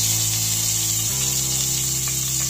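Freshly chopped ginger sizzling in hot ghee with cumin seeds in a steel pressure cooker: a steady bright hiss. Background music with low notes that change about once a second plays underneath.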